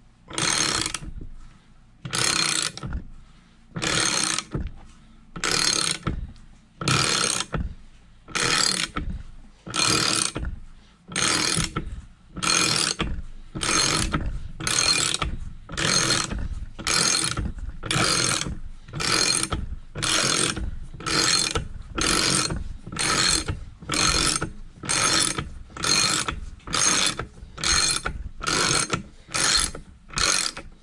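Ratchet wrench clicking in short bursts on repeated back-strokes as it turns a stud remover gripping the Stover Duro engine's worn shaft, about one stroke a second and slightly quicker toward the end.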